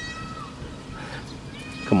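Baby goat bleating: a thin, high, slightly falling cry about half a second long at the start, with a fainter one near the end.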